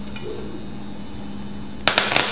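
Chopped onion sizzling in olive oil in a hot saucepan, a steady hiss, with a sharp knock near the end.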